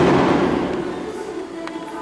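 A sudden loud bang that dies away over about a second, over steady devotional music during an aarti, with a sharp click near the end.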